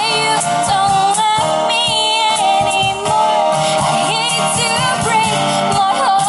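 A woman singing live, accompanied by a strummed acoustic guitar and a cajon.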